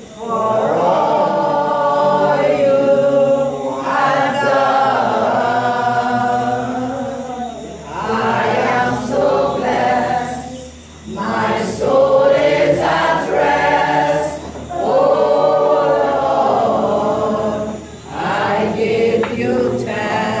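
A group of voices singing a hymn unaccompanied, in long held phrases with short breaks about eight, eleven and eighteen seconds in.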